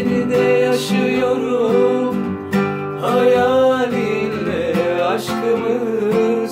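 Classical acoustic guitar strummed and picked, with a man singing long, wavering held notes over it.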